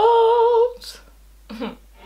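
A young woman's voice holding a drawn-out, wavering note in a mock crying wail, rising slightly in pitch and breaking off under a second in. A brief breathy sound follows about halfway between that and the end.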